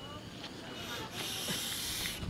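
A breathy hiss at the mouth that starts about a second in and lasts about a second, high-pitched and without tone.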